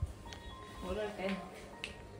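Soft talking in the room, with a thin steady tone under it and two light clicks.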